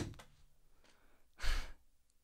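Mostly quiet, with a brief sharp noise at the very start and a short breathy exhale about one and a half seconds in, like a sigh or a quick laugh through the nose.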